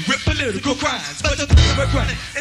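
A live band playing, with a vocalist chanting or rapping over drums and bass; a heavy low drum or bass hit falls about one and a half seconds in.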